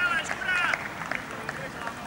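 Voices of footballers shouting across an outdoor pitch right after a penalty goes into the net, loudest in the first second, then a few faint knocks.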